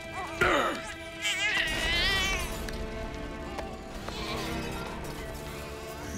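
A baby crying in a few short, wavering wails over a held music score.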